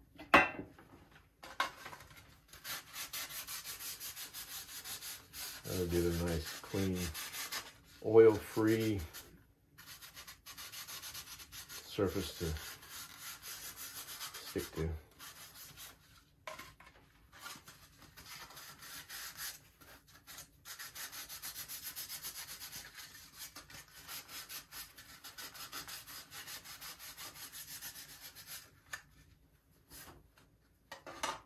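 Paper towel wetted with denatured alcohol rubbed briskly back and forth over the model's gear pods, cleaning the surface: a long run of rapid wiping strokes, with a few short, louder squeaks in the middle and a sharp clack at the very start.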